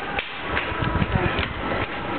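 Indistinct background voices with a handful of irregular taps and knocks, such as footsteps or handling of the handheld camera.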